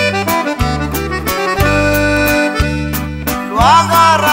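Norteño corrido instrumental break: button accordion playing the melody over a steady bass line and a strummed rhythm with a regular beat.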